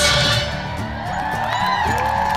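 Film soundtrack music played over outdoor cinema speakers, a song that ends about half a second in, followed by voices and whoops.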